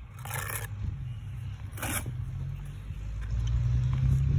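Steel trowel scraping mortar onto brick as bricks are laid: two short scrapes, the first just after the start and a shorter one about two seconds in. A steady low rumble runs underneath and grows louder near the end.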